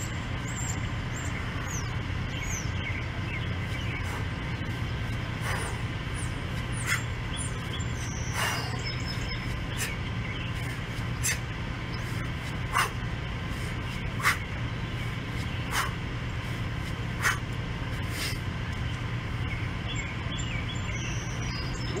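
A set of kettlebell swings: a short, sharp exhale with each swing, about one every second and a half, over a steady low hum. Birds chirp near the start.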